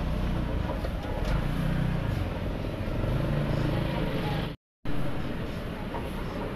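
Busy street-side ambience: a steady low rumble of passing traffic with people talking in the background. The sound cuts out completely for a moment about two-thirds of the way through.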